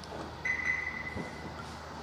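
A single steady high-pitched electronic beep lasting about a second, with a soft thump under it near its end.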